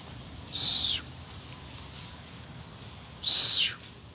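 A cat hissing twice in warning: two short, loud hisses, the second a little longer, about two and a half seconds apart.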